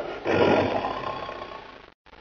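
A lion's roar, played as a sound effect: it breaks in loud about a quarter second in and fades away over about a second and a half.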